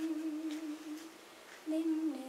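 A woman singing a Malayalam song, holding one long note for about a second, then a short quiet gap of about half a second before the next note starts.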